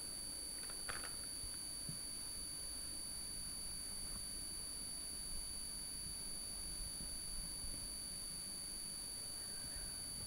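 Quiet room tone with a steady faint high-pitched electrical whine from the recording chain. There is one brief faint rustle about a second in.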